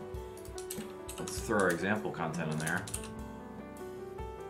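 Computer keyboard typing, scattered key clicks, over background music. A wavering vocal line in the music is loudest from about one to three seconds in.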